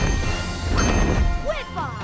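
Cartoon soundtrack: music with two loud rushing swells of sound effect as the cartoon pterodactyl swoops past, then a few short swooping vocal calls near the end.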